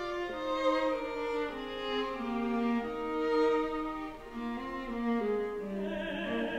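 Small string ensemble of violins, viola and cello playing a slow instrumental passage of held, overlapping notes that move from one to the next every half second to a second.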